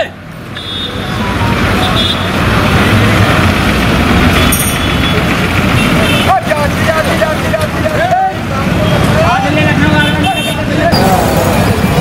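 Bus-stand din: bus engines running and road traffic noise, with voices calling out over it, including several drawn-out shouts in the second half.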